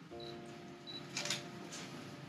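Camera shutter clicking, a quick burst about a second in and one more click near the end, over background music holding a sustained chord.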